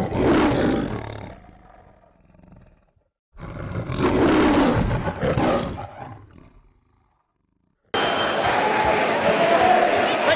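Two tiger roar sound effects, each loud at the start and fading out over about three seconds, with a short silence after each. From about eight seconds in, the steady background noise of a sports hall.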